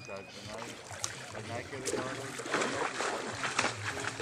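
Water splashing and sloshing around a swimming Newfoundland dog, with several sharper splashes in the second half.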